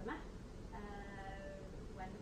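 A woman's voice holding a drawn-out vowel at a steady pitch for about a second in the middle, like a hesitant 'uhh' between phrases.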